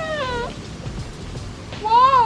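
High, meow-like calls that rise and fall in pitch: one fading out in the first half second, another starting near the end, over background music.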